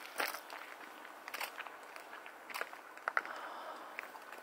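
Footsteps crunching on snow, a few quiet, irregular crunches.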